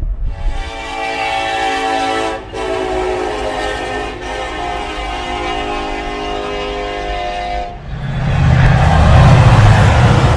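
A horn sounding a steady chord of several tones in three blasts, the last one longest, broken by two short gaps. It stops near the end and gives way to a loud, deep rumbling noise.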